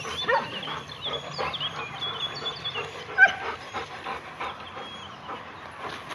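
Dogs yipping and whining in many short, high calls, with one louder yelp or bark about three seconds in.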